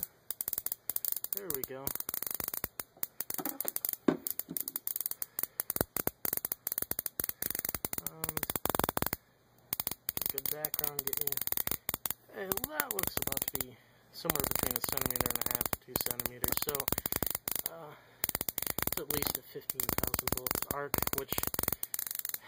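High-voltage arcing from a Cockcroft-Walton voltage multiplier driven by a flyback plasma-globe driver: a rapid, irregular crackle of snapping sparks. It breaks off briefly a few times, about nine, fourteen and eighteen seconds in, as the arc stops and restarts.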